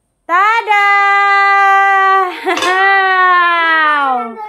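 A voice singing out one long, loud held note that starts abruptly, breaks briefly about halfway, then slides lower near the end.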